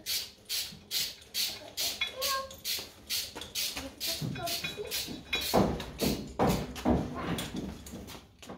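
Socket ratchet wrench clicking in quick, even strokes, about three a second, tightening a bolt on the quick hitch's adjustment; the strokes get heavier from about halfway.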